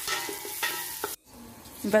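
Diced onion sizzling in hot oil in a stainless steel pot while being stirred with a wooden spoon. The sizzle cuts off suddenly just over a second in, leaving a quieter stretch.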